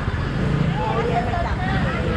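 People talking nearby in a busy street market, over a steady low rumble of street and traffic noise.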